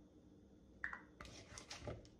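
A spice shaker jar of onion powder shaken over a plastic bowl of potato wedges: a few soft, short scratchy shakes starting about a second in.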